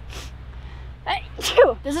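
A woman sneezes once, about a second and a half in, after a faint breathy build-up. She puts the sneeze down to being among green plants.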